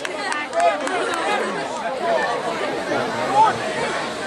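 Indistinct chatter: several people's voices talking over one another, none of them clear.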